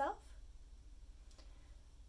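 Quiet room tone with a single faint click about one and a half seconds in, just after the end of a spoken word.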